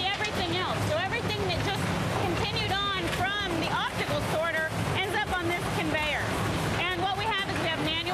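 Talking over the steady low rumble of recycling-plant conveyor and sorting machinery.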